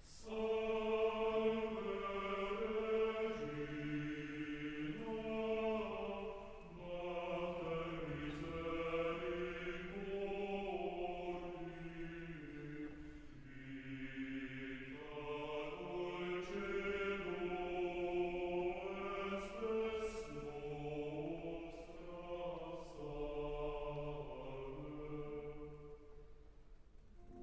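Opera chorus singing a slow passage in long, held chords, softly.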